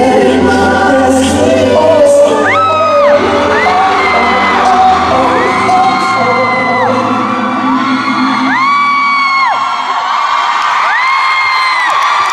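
Live pop music playing out its last bars in a concert hall while the audience screams and cheers, with repeated high-pitched screams about a second long rising over the music. The bass fades out near the end, leaving mostly the crowd's screaming.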